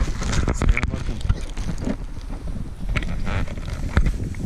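Wind buffeting the microphone in a steady low rumble, with scattered crackles and knocks of footsteps and rustling on dry forest ground.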